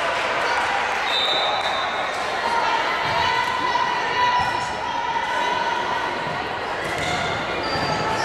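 Overlapping voices of players and spectators in a gymnasium, with a volleyball bouncing on the hardwood court.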